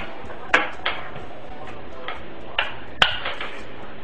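Metal bolts clicking and tapping against a cell's end plate as they are pushed through its holes: about five sharp, separate clicks, the loudest near the start and about three seconds in.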